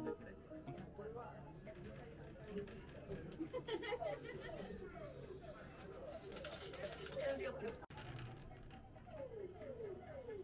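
Faint background chatter of several voices in a shop, with a short hiss about six seconds in.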